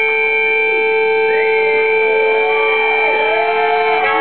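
Amplified blues harmonica played into a cupped vocal microphone, holding one long, steady chord, the closing note of the song. Fainter notes bend up and down beneath it.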